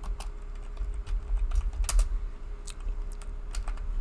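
Computer keyboard typing: irregular key clicks, some single and some in quick runs, over a steady low hum.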